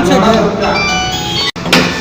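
Background music with a rising pitched glide at the start, under a man's voice finishing a sentence. The sound drops out suddenly about a second and a half in, then returns with a short burst.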